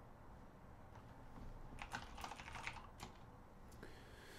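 Faint typing on a computer keyboard: a quick run of keystrokes about two seconds in, with a few single key clicks before and after.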